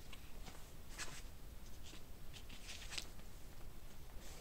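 Faint room tone in a small room, with a few soft, brief rustles or clicks scattered through it, the clearest about a second in and near the end.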